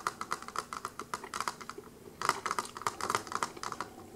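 Close-miked chewing of a mouthful of food: rapid, wet clicking mouth sounds. They come in two runs, with a short pause about halfway.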